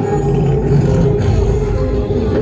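Loud music over a DJ sound system.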